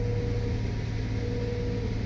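Multihog CV compact sweeper running in sweep mode, heard from inside its cab: a steady low engine drone under an even rushing noise from the suction fan and brushes.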